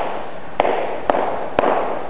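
Hand claps keeping a steady pulse, three claps about half a second apart, laying down the basic beat of a rhythm demonstration.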